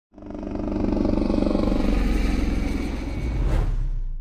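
Helicopter engine and rotor running steadily with a fast, even pulsing beat. A sharp swish comes about three and a half seconds in.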